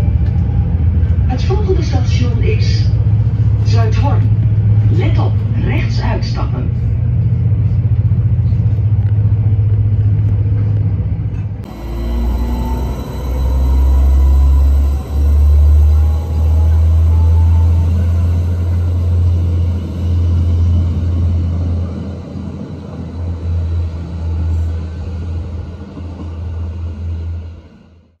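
Steady low running hum of a train heard from inside the carriage, with voices over it. After a cut, about twelve seconds in, a turquoise Arriva regional train's engine rumbles low at the platform, swelling and dipping, then fading near the end.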